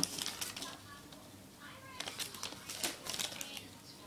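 Paper till receipts rustling and crinkling as they are handled, in short scratchy spells near the start and again from about two seconds in.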